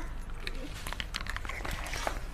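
Faint, scattered small clicks and handling noises from small plastic toy teacups and saucers being handled and lifted to the lips for pretend sips.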